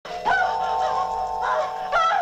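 Eerie horror-film score: sustained held notes under a shrill, wavering high line that bends up and down in pitch.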